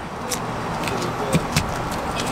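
Steady outdoor background noise, with a few light clicks and rattles as rope and strap gear are picked up and handled.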